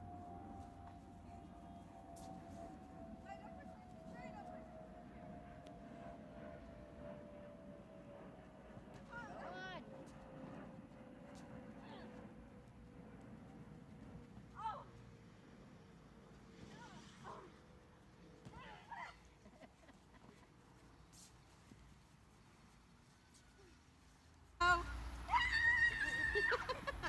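Faint outdoor ambience with short distant shouts and calls here and there, over a faint steady hum that slowly drops in pitch; a loud voice comes in near the end.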